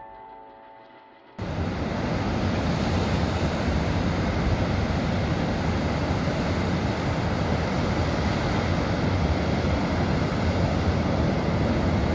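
Plucked-string music fades out. At a sudden cut about a second and a half in, heavy surf takes over, breaking on a sandy beach in a storm, with strong wind buffeting the microphone.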